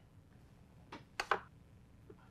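Near silence: room tone, broken by a few faint, brief sounds about a second in.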